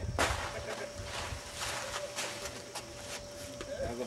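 Wind rumbling on the microphone, with short rustling hisses every half second or so and a faint steady hum underneath.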